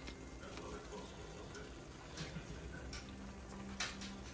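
Faint kitchen handling sounds: a few soft clicks and rustles as roasted green chiles are peeled by hand over a plastic bag, the loudest click near the end.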